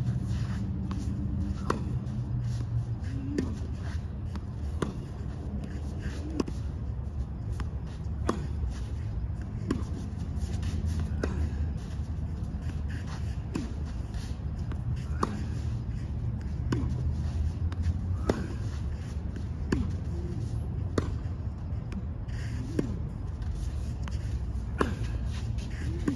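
Tennis rally: rackets striking the ball and the ball bouncing on the court, a sharp pock about every second and a half, with shoes shuffling on the court surface between shots. A steady low rumble runs underneath.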